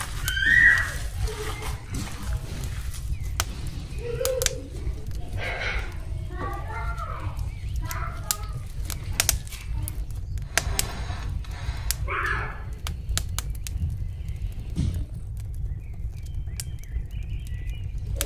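Wet squelching and sticky clicks of a gloved hand kneading raw minced meat and pressing it into bell peppers, over a steady low hum.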